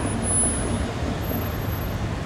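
Street traffic: a steady low rumble of cars driving across the intersection.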